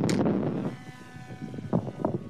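Catapult launch of a small battery-powered fixed-wing drone off its rail: a sudden burst of noise as it is fired, then, after about half a second, the steady whine of its electric motor and propeller as it flies away.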